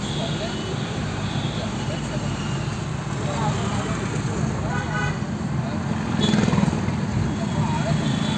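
Engine and road noise heard from inside a moving vehicle in town traffic, a steady low hum, with indistinct voices talking.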